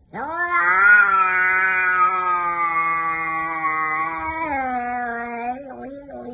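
A cat giving one long, drawn-out yowl of about five seconds, its pitch rising at the start, holding steady, then rising briefly again and falling away near the end.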